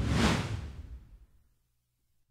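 A whoosh sound effect accompanying an animated logo sweeping onto the screen, fading out within about a second and a half.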